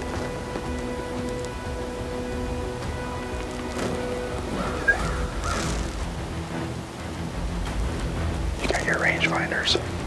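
Background music of slow, held notes over a low rumble, with one sharp click about five seconds in. Faint voices come in near the end.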